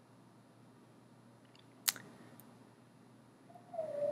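Near silence of room tone, broken once about two seconds in by a single sharp click of a computer mouse, followed near the end by a short faint hum.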